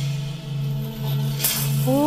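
Klezmer band playing an instrumental passage between sung lines: a steady low held drone, with a single bright percussion hit about one and a half seconds in.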